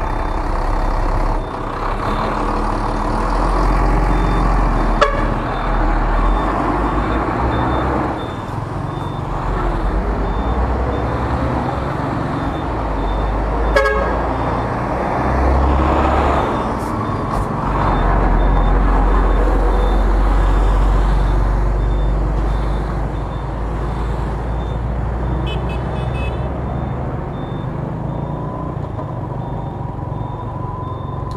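Road traffic heard from a moving motorbike: engines running over a steady low rumble. A heavy multi-axle truck passes close about halfway through, and there are short horn beeps about three-quarters of the way in.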